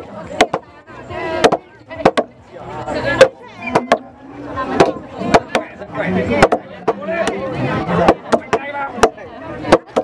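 Two wooden mallets pounding cooked glutinous rice in a wooden trough to make rice cakes. The pounders strike in turn, about two sharp wooden knocks a second at an uneven pace, over a crowd's chatter.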